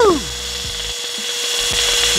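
Cordless handheld vacuum's 100 W motor running with a steady whine while its narrow nozzle sucks up a small pile of loose grains.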